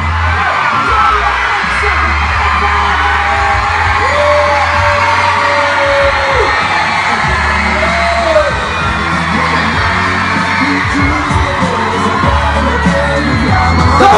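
Loud pop-rap music with a steady deep bass beat and a sung voice holding long notes, over a shouting, cheering crowd.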